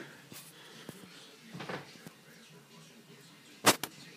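A sneaker is set down on a cardboard shoebox lid with a sharp double knock near the end, after a few seconds of faint handling rustle.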